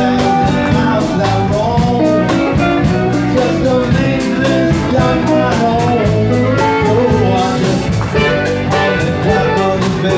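Live band playing amplified through the room: a strummed acoustic guitar and an electric guitar, with a man singing over them at a steady beat.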